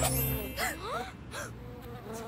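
Cartoon bee character's buzzing sound effect, gliding up and down in pitch, as the last chord of a song dies away in the first half-second.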